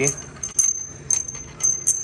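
A handful of metallic clinks, each with a thin ringing after it: the loose washer and spring-perch hardware on the rod of an old shock absorber rattling as the shock is handled on a concrete floor.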